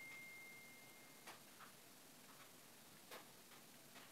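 Near silence: room tone with a few faint, short clicks, and a faint high steady tone that fades out about a second in.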